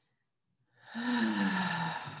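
A person's long, breathy sighing out-breath, voiced and sliding down in pitch, starting just under a second in and trailing off.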